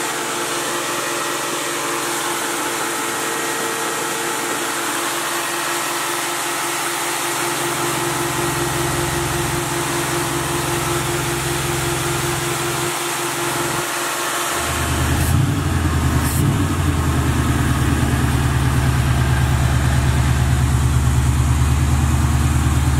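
Four-barrel carbureted Chevy V8 in a box Chevy Caprice idling steadily with no popping; about two-thirds of the way through, the note grows louder and deeper. The engine is running smoothly now that a small intake vacuum leak has been traced, though it still needs new spark plugs.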